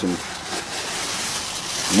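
Paper rustling steadily as it is pulled out of a cardboard shipping box.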